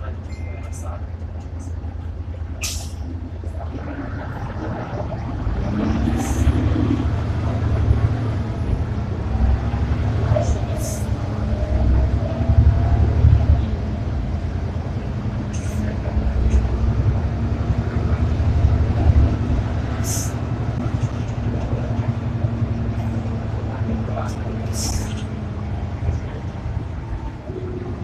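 Inside an Ikarus 435 articulated diesel bus under way: a deep engine and road rumble that swells about five seconds in, with a steady drivetrain whine joining it. Sharp rattling clicks come every four to five seconds.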